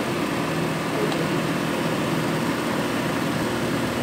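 A pot of macaroni soup boiling hard on a gas burner: a steady rushing noise with a low hum underneath.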